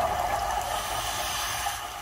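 Underwater ambience: a steady rushing, hissing water noise over a low rumble, easing slightly near the end.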